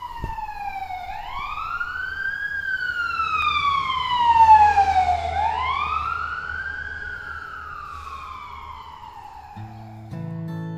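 A siren wailing in two long cycles, its pitch rising quickly and then falling slowly, loudest about halfway through.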